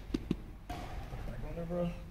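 Two quick, soft thumps in close succession near the start, followed by a quiet voice.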